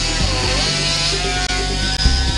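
A handheld rotary grinder running steadily on a plastic prosthetic socket, its pitch dipping briefly about half a second in as it takes load. Background music plays under it.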